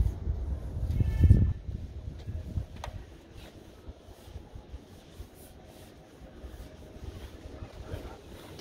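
Wind rumbling on the microphone, strongest in the first second and a half, then dying down to a faint background with a few light clicks.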